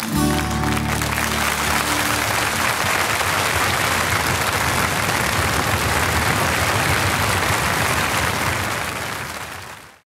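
Audience applauding as the band's final held chord dies away in the first couple of seconds; the applause then fades out near the end.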